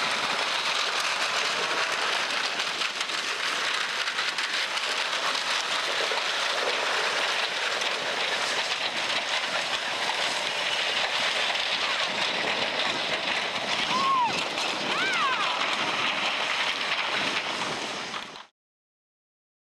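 Steady crackling hiss of wind across open ice. Near the end come two or three short rising-and-falling whoops of people cheering.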